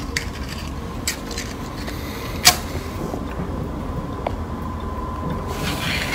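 A match and matchbox being handled: a few sharp clicks and knocks, the loudest about two and a half seconds in, then a short scratchy hiss near the end as the match is struck, over a steady low room rumble.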